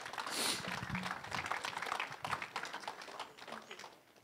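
Congregation applauding, many hands clapping at once and then thinning out toward the end.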